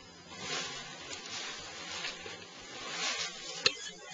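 Rustling and handling noise of tent poles and nylon screen-room fabric, coming in soft swells, with one sharp click about three-quarters of the way through as a pole fitting seats.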